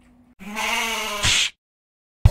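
A single wavering sheep-like bleat, about a second long, that starts about half a second in and cuts off suddenly. A short high hiss comes just before it ends.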